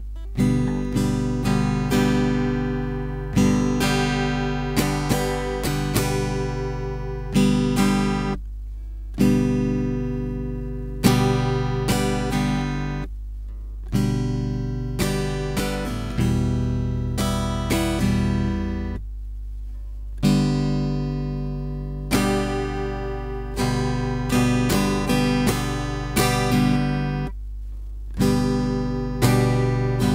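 Acoustic guitar strummed in chords with a down, down, down-up strumming pattern. The pattern repeats in phrases of a few seconds, with short pauses between them.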